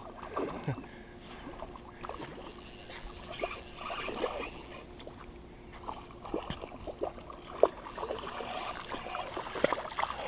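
Small splashes and sloshing of water close to shore from a hooked smallmouth bass fighting on the line, with scattered light clicks and handling noise from the rod and reel close to the microphone.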